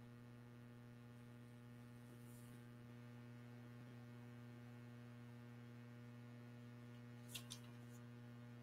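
Near silence with a faint, steady electrical hum and two small clicks near the end.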